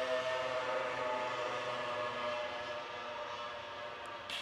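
Moped engine passing outside: a steady droning note that slowly fades, sounding like a lawnmower.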